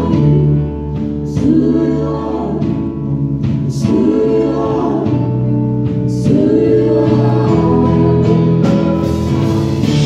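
Live worship singing: several voices singing together over a band with keyboard and bass guitar, with a few sharp cymbal-like strokes.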